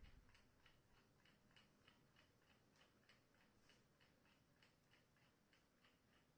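Near silence with a faint, even ticking, about four ticks a second.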